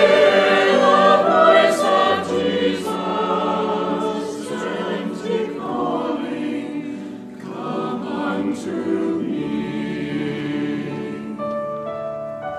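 Mixed church choir singing in parts, getting softer through the phrase, with a piano coming in on its own near the end.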